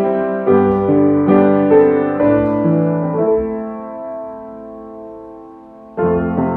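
Solo piano playing notes and chords about twice a second. About halfway through, a chord is held and slowly dies away.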